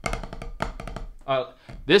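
Drumsticks playing a fast run of strokes on a rubber practice pad, stopping a little over a second in.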